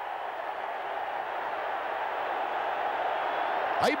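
Stadium crowd cheering a try, a steady roar that slowly grows louder, heard through an old television broadcast.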